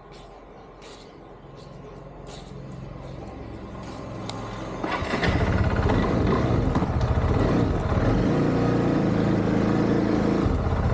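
A few light clicks and taps, then about halfway through a motorcycle engine comes in loud and runs steadily.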